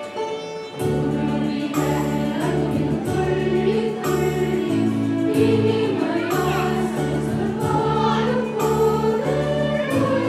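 A mixed choir of children and adults singing a Christmas carol together. A full accompaniment with bass notes and a steady beat comes in about a second in, under the voices.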